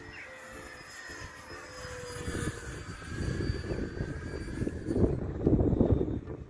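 Electric ducted fan of an E-flite Habu STS RC jet whining in flight overhead, its pitch sliding as it flies past. A rough rumbling rush grows louder in the second half.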